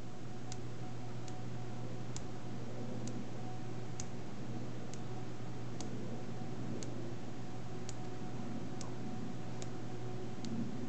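Small neodymium magnet spheres clicking faintly together about once a second as the hands pinch and snap rows of balls into place, over a steady low hum.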